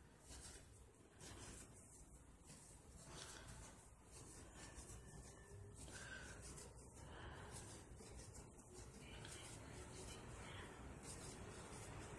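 Near silence, with faint, irregular rubbing of acrylic yarn and a crochet hook as stitches are worked.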